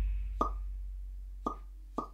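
Edited-in sound effects: a deep bass boom slowly fading out, with four short pops at uneven intervals over it.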